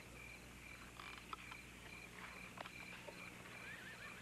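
Faint crickets chirping, a steady high pulsing trill, over a low hum, with a few soft clicks.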